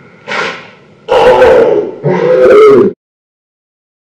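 A man yelling in pain as a wax strip is pulled from his leg: two loud, distorted yells, cutting off suddenly about three seconds in.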